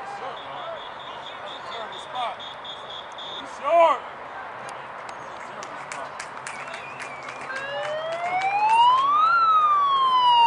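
A siren wailing in the last few seconds: one slow rising sweep that peaks shortly before the end and then starts to fall. Scattered shouts and clicks come before it.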